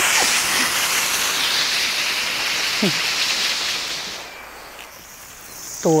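Water spraying from a garden hose nozzle onto vegetable plants: a steady hiss that drops away about four seconds in, leaving a thinner, fainter, high hiss as the nozzle setting is adjusted.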